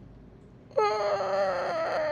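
A man's high-pitched, wavering whimper, starting just before the middle and lasting about a second and a half, as he chokes up, close to tears.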